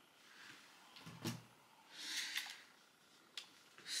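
Quiet handling noises: a light click about a second in, a brief rustle around two seconds, and another click near the end.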